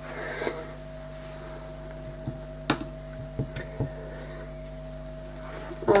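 Quiet room tone with a steady electrical hum, and a handful of faint light taps and clicks about halfway through.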